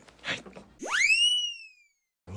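An edited-in sound effect: one whistle-like tone that shoots up in pitch, then glides slowly down for about a second and fades, ending in a sudden cut to silence.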